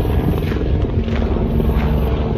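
Wind buffeting a phone's microphone: a steady low rumble, with a faint steady hum beneath it.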